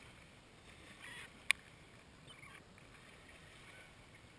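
Mallard ducklings feeding close by, with a few faint peeps over a faint steady background. One sharp click about one and a half seconds in is the loudest sound.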